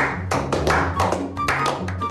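Several people clapping together in a steady rhythm, about four claps a second, over background music.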